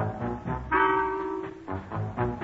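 Swing band playing the introduction to a song, led by brass, with a chord held for about a second in the middle. It is an old radio broadcast recording.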